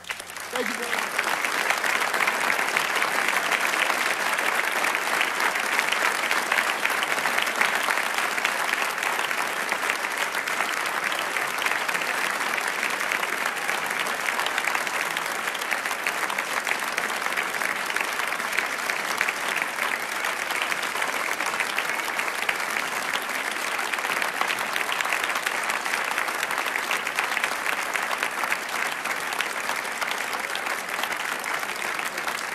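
Concert audience applauding steadily after a song ends, with the last piano note dying away under it in the first second.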